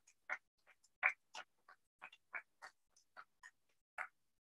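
Faint scattered applause from a small audience: separate hand claps at about three or four a second, irregularly spaced, with dead silence between them.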